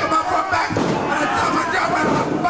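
Wrestler slammed down onto a wrestling ring's mat: a heavy thud of a body hitting the canvas-covered boards, with voices shouting over it.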